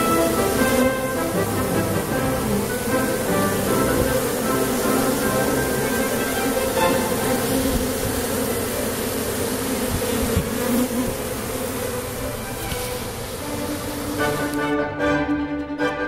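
A large mass of honeybees buzzing steadily as the colony crowds into a hive entrance, with background music. About a second and a half before the end, the buzzing cuts off and only string music remains.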